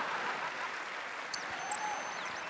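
Studio audience applauding and cheering, a steady even wash of crowd noise.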